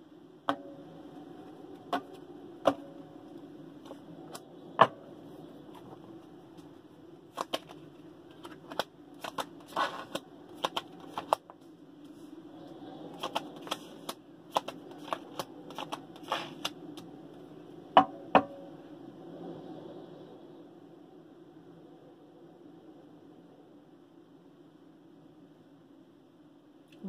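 Tarot cards being shuffled and dealt onto a table: irregular sharp snaps and taps, thickest in the middle, with two last taps about two-thirds of the way in. A faint steady hum carries on through the quieter end.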